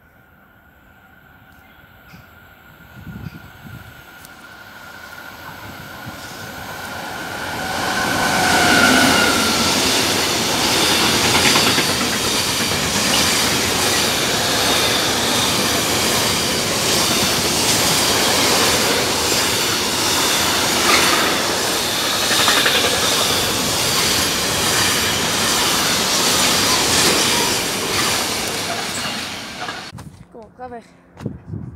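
Freight train of tank-container wagons passing close by at speed. It grows louder over the first eight seconds, with a thin high whine as it nears, then holds a steady loud rumble and clatter of wagon wheels over the rails until it cuts off just before the end.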